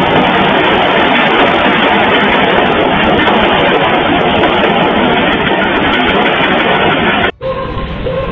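Loud background music that cuts off abruptly about seven seconds in, then carries on more quietly.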